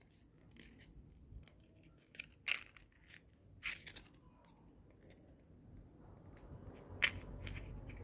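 Red craft paper faintly rustling and crackling as fingers fold it into a cone, in a handful of short, scattered crackles.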